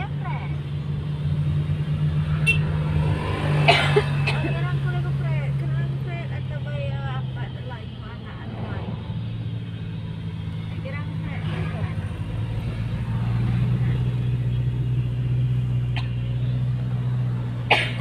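Car engine and road noise heard inside the cabin of a moving car: a steady low drone that drops a little in pitch about two-thirds of the way through.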